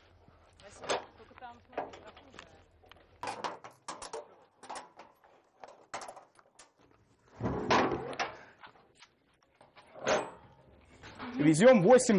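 A string of light, scattered knocks and clicks, with a voice briefly speaking about two-thirds of the way through and again near the end.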